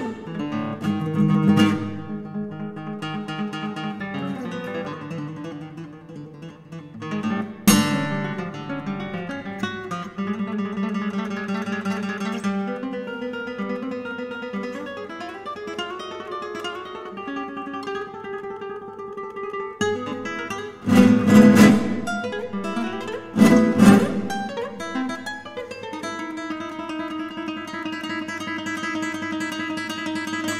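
Solo classical guitar playing an atonal, modernist line of plucked notes and rapid runs. It is broken by a sharp chord about eight seconds in and by two loud bursts of strummed chords about two-thirds of the way through.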